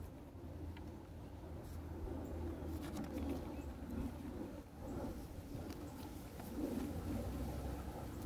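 A bird cooing repeatedly over a low steady outdoor hum, with faint clicks and rustles of cardboard photo cards being handled.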